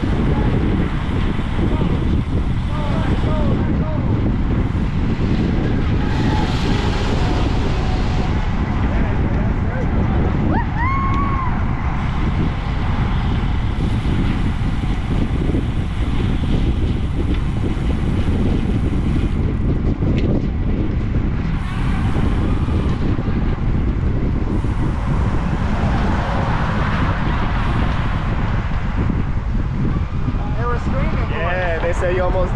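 Steady low rumble of wind buffeting the microphone of a camera on a bicycle ridden at speed, with faint voices now and then.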